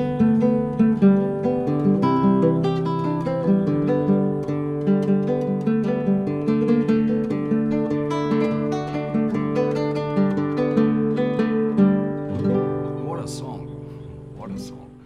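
Acoustic guitar playing a plucked melody over long-ringing low bass notes; the playing drops away and fades near the end.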